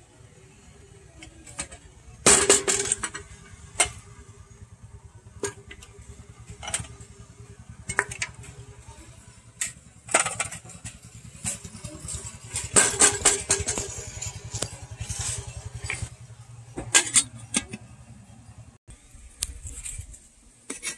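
Scattered knocks and clinks of a stainless steel kettle, fruit and dishes being handled, loudest about two seconds in and again near the middle. A steady low rumble runs under them for most of the time.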